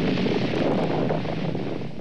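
Loud, steady rushing roar of a large explosion's rumble, laid over film of a nuclear fireball, easing off slightly near the end.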